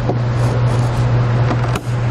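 A steady low hum, with light handling noise from a plastic wiring connector and tail light housing and a short click near the end.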